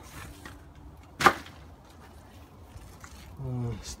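A single sharp knock about a second in, much louder than anything else here, over faint background noise.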